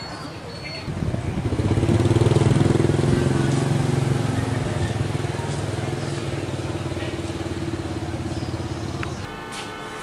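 A motor vehicle engine running close by: it comes up about a second in to a steady low hum at an unchanging pitch, slowly fades, and drops away just before the end.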